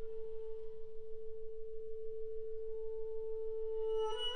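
A single steady, nearly pure tone held alone at one pitch in a contemporary chamber piece, with only a faint octave above it and no other instruments sounding.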